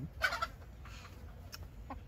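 A chicken gives a short cluck about a quarter of a second in, followed by a faint click.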